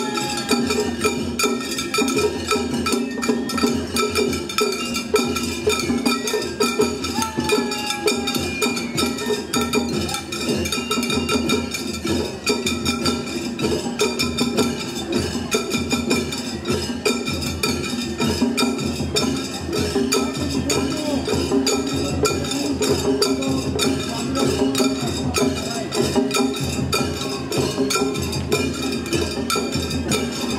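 Shagiri festival music: shime-daiko and a large barrel taiko beaten in a fast, steady rhythm, with a metal hand gong clanking along throughout.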